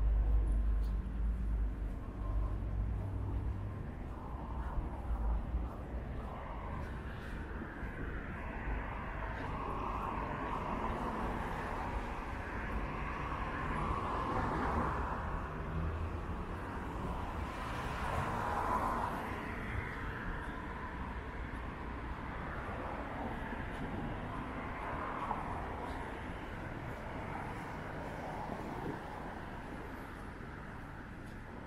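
Street traffic: cars passing on the road one after another, loudest around the middle, with a low rumble over the first few seconds.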